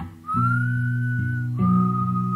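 Music: a whistled melody over a guitar accompaniment. Two long held notes, the first rising slightly and the second lower, come after a brief dip in the music just after the start.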